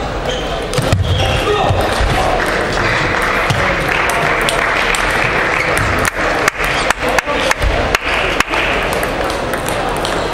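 Table tennis ball clicking off the bats and the table during a rally, a fast run of sharp clicks a little past the middle, over the background chatter of a large sports hall.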